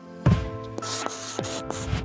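Podcast intro music: sustained tones with a sharp hit about a quarter second in and several lighter hits after it, under a steady high hissing noise.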